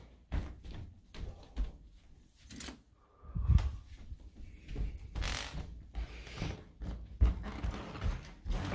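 Scattered knocks, bumps and rustles of handling as a hand-held phone is moved about, with a few low thumps.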